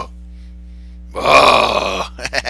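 A person's loud, rough grunt, a mock-macho strongman noise made while flexing a bicep. It starts just past a second in and lasts under a second.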